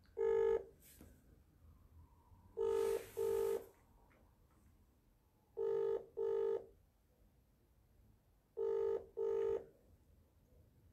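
Telephone ringback tone in the British double-ring pattern, heard while a call rings out unanswered: short double rings about every three seconds, one ring at the start and then three full pairs.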